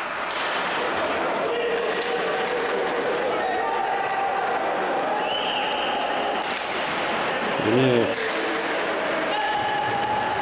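Ice hockey rink sound during play: a steady wash of crowd and arena noise with skating, a few sharp clacks of sticks and puck, and several long held voices from the stands. A short burst of a man's voice comes about eight seconds in.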